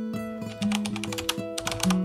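Background music with held notes and a run of quick, light clicks through the second half.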